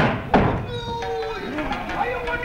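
Kabuki nagauta accompaniment: a sung note held long and steady, cut across at the start by two loud, sharp percussion strikes about a third of a second apart that ring on briefly. The voice slides near the end.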